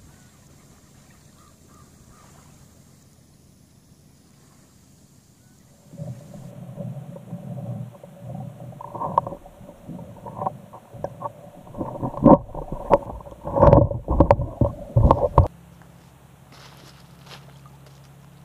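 Water gurgling and rumbling heard through a submerged camera, with irregular sharp knocks that grow louder and then cut off suddenly. Before and after it, only a faint steady background from above the water.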